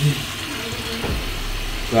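Water running from a bathroom sink tap as a man washes his face over the basin.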